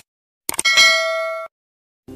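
A metallic clang sound effect. A sharp strike about half a second in rings on with several steady tones for about a second, then cuts off abruptly.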